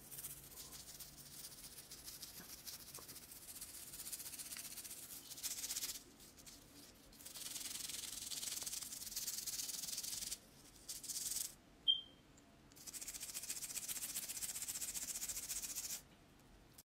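Toothbrush bristles scrubbing toothpaste over a gold grill: a scratchy brushing sound in stretches of a few seconds, broken by short pauses, with one brief high squeak about twelve seconds in.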